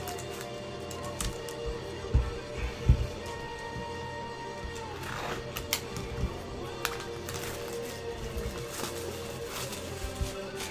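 Background music with steady held tones, over a few soft knocks and taps from hands handling a trading-card box and card cases. The loudest knock comes about three seconds in.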